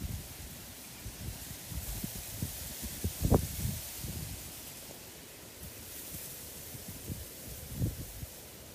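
Rice plants rustling against the camera as it moves among the stalks, with wind and handling noise on the microphone. Scattered soft knocks, the loudest a little over three seconds in and another near the end.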